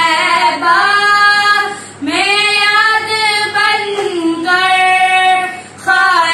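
Two children singing an Urdu naat together, unaccompanied, in long held notes that glide in pitch, with short breaks for breath about two seconds in and near the end.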